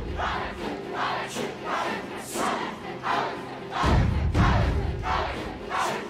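Loud chanting by a group of voices, with short shouted syllables repeating two to three times a second. A deep low boom comes in about four seconds in.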